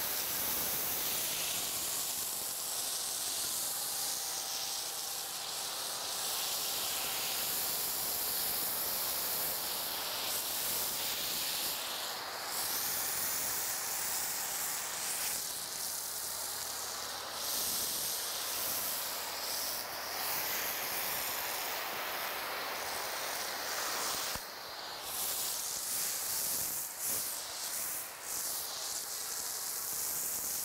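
Foam cannon spraying thick car shampoo foam: a steady hiss of spray, with a few brief breaks and wavers in the second half.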